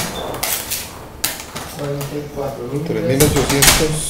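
A voice reading out numbers over light clattering and clicking of small hard objects, a few short clicks and rattles scattered through.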